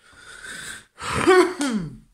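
A person's breathy intake of breath, then a short, loud voiced sound that falls in pitch near the end, like a gasp or exclamation.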